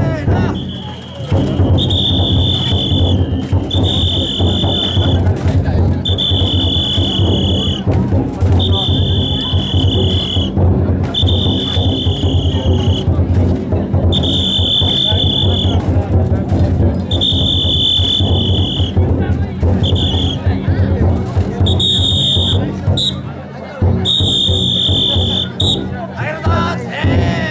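Taiko drum on a chousa drum float beaten continuously amid the carriers' voices, with a whistle blown in long, steady blasts about every two seconds, a dozen in all, to drive the float's bearers.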